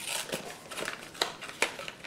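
Bulb packaging being worked open by hand: faint crackling of the card and packaging, broken by a few sharp clicks as it is pried apart.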